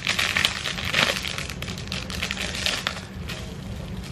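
Clear plastic packaging crinkling and crackling in the hands as a pair of earrings is unwrapped. It is busiest for the first three seconds, then quieter.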